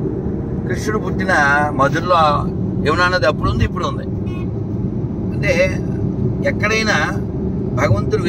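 Car cabin noise while driving: a steady low rumble of road and engine, with a man talking over it in short phrases.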